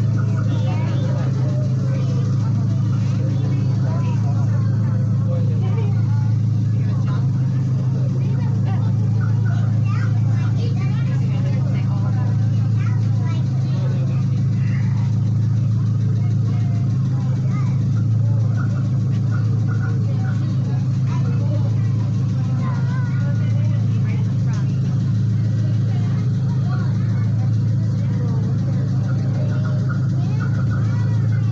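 Miniature park train's engine idling with a steady low drone, while passengers chatter faintly in the background.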